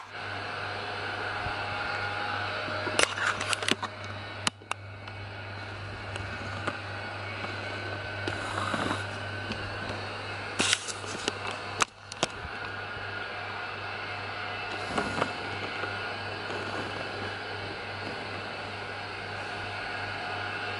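A steady low hum under faint background noise, with a few sharp clicks and knocks about three to five seconds in and again around eleven to twelve seconds in.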